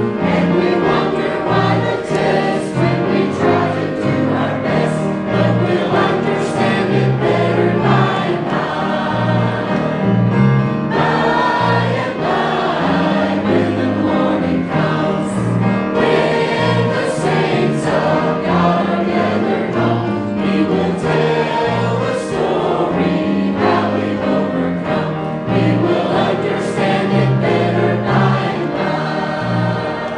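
Mixed church choir of men and women singing a hymn.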